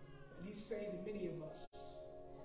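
A man's voice through a microphone, a held, drawn-out tone that wavers up and down in pitch, with steady background music underneath. The sound cuts out for an instant near the end.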